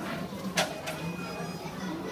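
Indistinct background voices with a faint steady low hum, broken by two short hissing noises about half a second and a second in.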